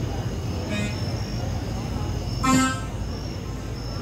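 One short horn-like toot about two and a half seconds in, loud and brief, over a steady background of voices.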